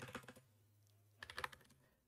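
Faint computer keyboard typing: a few keystrokes at the start, then a quick run of keystrokes about a second and a quarter in.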